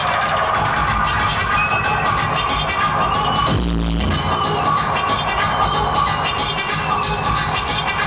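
Loud hardcore electronic music from a live DJ mix, played over a club sound system. About three and a half seconds in, the high end cuts out for half a second, leaving only deep bass, and then the full mix comes back.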